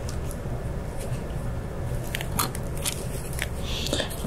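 Scattered light clicks and taps of a CPU heatsink being set down and seated onto its mounting posts by gloved hands, most of them in the second half, over a steady low hum.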